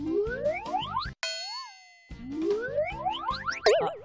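Cartoon comedy sound effects over a bouncy music beat. Rising whistle-like slides repeat twice, with a sudden cutoff and a short wobbling tone between them. A loud wobbling boing comes near the end.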